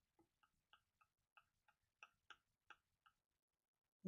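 Near silence with faint, irregular light ticks, about three a second: paint being mixed on a palette.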